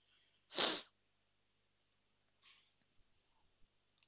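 A single short, breathy burst from a person, like a sneeze or sharp exhale, about half a second in; otherwise very quiet room tone with a few faint ticks.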